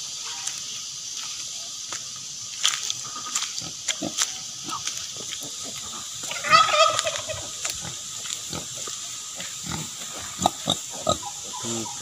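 Native pigs grunting in short, scattered bursts, with one louder, higher-pitched call about halfway through.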